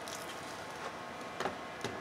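A few faint clicks and knocks from a three-fan graphics card being handled and pushed into a motherboard's PCIe slot, the two sharpest about a second and a half in and near the end, over low room noise.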